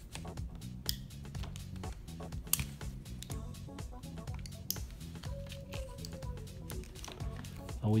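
Background music, with occasional sharp clicks and scrapes of a utility knife scoring the plastic outer jacket of an interlock armored fiber optic cable.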